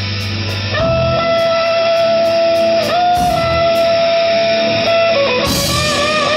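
Live rock band with distorted electric guitar: one long held lead note comes in about a second in and holds steady, stepping up slightly midway, then gives way to shorter wavering notes near the end, with the rest of the band underneath.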